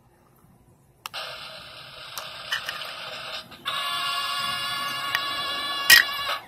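Nearly silent for about a second, then a steady, high, pitched buzz of several tones starts suddenly. It grows louder and stronger about three and a half seconds in and cuts off near the end.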